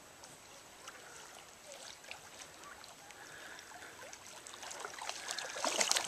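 Australian shepherd swimming with a toy in her mouth: faint lapping and trickling water that grows louder near the end as she reaches the shallows and wades with light splashing.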